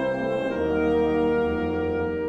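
Orchestra with saxophones playing held chords, moving to a new chord about half a second in.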